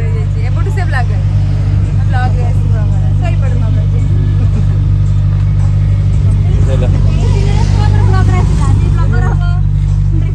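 Steady low hum of an idling car engine close by, under several people's voices talking over one another.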